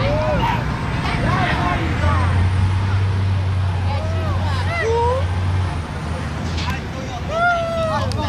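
Voices of a roadside crowd talking over the low, steady rumble of a large vehicle's engine, which is loudest for a few seconds in the middle.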